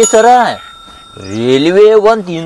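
A bell-ding sound effect from a subscribe-button animation, a thin ringing tone that lasts about a second and a half, heard under a man's drawn-out voice.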